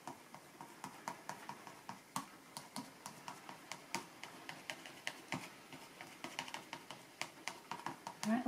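Quick, irregular light taps and clicks, several a second, of a painting tool dabbing thick acrylic paint onto paper.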